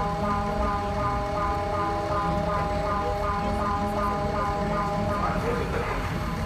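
Mexico City's seismic alert sounding from street loudspeakers: a repeating siren tone in short, evenly spaced segments, warning that an earthquake is coming. It stops about five seconds in, over the steady low rumble of the bus and traffic.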